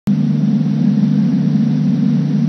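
A loud, steady low hum that stays at one pitch throughout, starting abruptly at the very beginning.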